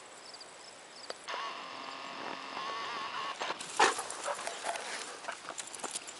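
A dog whining in one long, slightly wavering high note for about two seconds. This is followed by a run of irregular clicks, knocks and scuffles, one of them loud, as the dogs play at close range.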